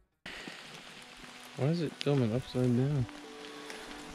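Steady rain falling in a forest, with a man's voice making three short sounds around the middle.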